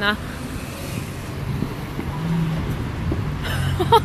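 Road traffic on a wet street: a car engine's low hum swells during the second half, over the hiss of traffic.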